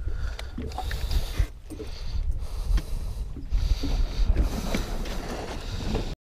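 Wind on the microphone with water slapping against the side of a drifting fishing boat, a gusty low rumble under a steady hiss, broken by a few short knocks or splashes.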